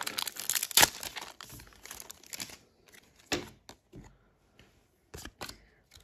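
Foil Pokémon booster pack wrapper being torn open and crinkled for about two and a half seconds, followed by a few short, sharp clicks as the cards are handled.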